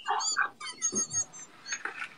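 A woman's high-pitched, squealing laughter in short squeals over the first second, dying down to fainter gasps and clicks.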